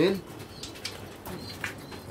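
Domestic pigeons in a loft, with a few brief wing flaps and rustles.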